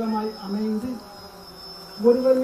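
A man's voice over a microphone in drawn-out, sing-song syllables, louder in the first second and softer after, with a faint steady high-pitched whine throughout.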